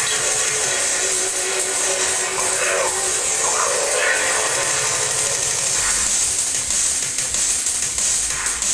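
Drum and bass mixed live on vinyl turntables, recorded on a camcorder microphone, with a steady hiss over it and thin bass; a deep bass comes in about six seconds in.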